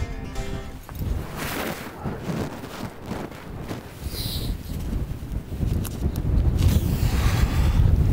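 Wind buffeting the microphone outdoors, an uneven low rumble that grows louder near the end, under quiet background music.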